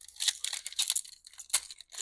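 Foil wrapper of a 2024 Topps Series 1 baseball card pack being torn open by hand, its glued seam pulling apart in a run of crackling rips, with one sharper tear about one and a half seconds in.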